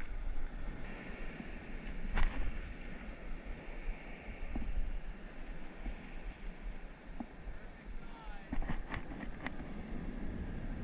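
Steady wind noise rumbling on an action camera's microphone over open water, with a few light knocks about two seconds in and again near the end.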